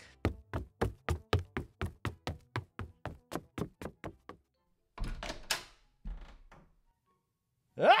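Sound-effect footsteps hurrying along, a quick even run of about five steps a second that lasts some four seconds and fades slightly. Two short noisy bursts follow about a second apart.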